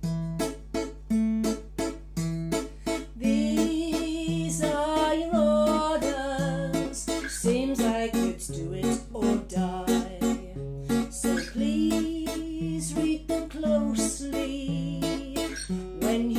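Acoustic guitar playing a waltz accompaniment, a low bass note followed by chords in each bar, with a woman's voice singing the melody from about three seconds in.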